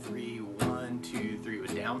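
Acoustic guitar strummed with single down strokes in waltz time, three-beat counts, a stroke about every half second, lightly muted so the chords are damped rather than ringing freely.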